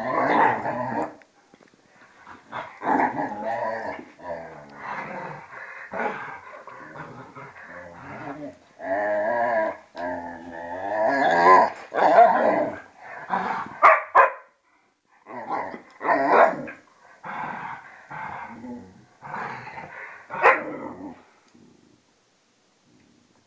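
A vizsla and a German shorthaired pointer play fighting, growling and barking in a string of short bouts, with a brief pause past the middle.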